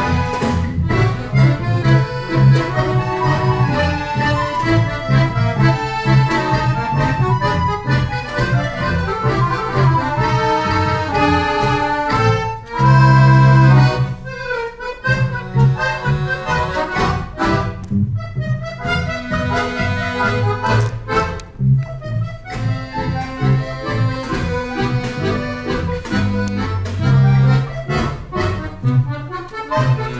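Accordion orchestra playing ensemble music with a bass line under the melody. About halfway through a loud chord is held for over a second, then the sound drops off briefly before the playing goes on.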